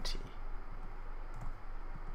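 A couple of faint computer keyboard clicks as a value is typed into a field, over a steady low hum.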